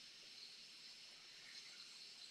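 Near silence: a faint steady hiss of room tone.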